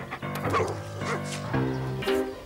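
Background music with a dog giving short barks or yips, about half a second in and again about a second in.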